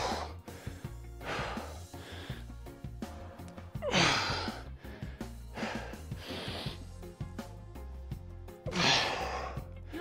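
A man breathing hard from exertion during kettlebell goblet squats: a loud, forceful exhale about every four to five seconds, with quieter breaths between. Background music with a steady low beat runs underneath.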